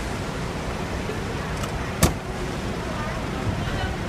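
Steady low rumble of a car idling close by, with faint voices, and a single sharp click about halfway through.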